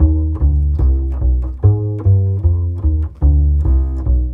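Upright double bass plucked pizzicato, playing a slow, evenly paced walking bass line of about ten notes, each note changing pitch.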